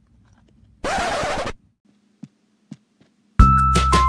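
A brief rush of noise lasting under a second, about a second in, then two faint ticks, and background music with a keyboard melody and a steady beat starting again near the end.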